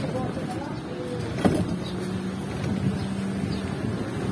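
Motorcycle-with-sidecar (tricycle) engine running as it rolls slowly along a street, over steady road noise, with a sharp knock about a second and a half in and a steady low engine note for about two seconds after it.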